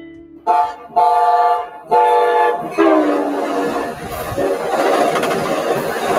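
Train horn sounding four blasts, the first short and the last sliding down in pitch, followed by the loud, steady rush of the train passing close by.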